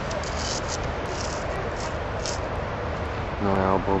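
Steady outdoor background noise with a few brief, faint scuffs in the first half. A man starts speaking near the end.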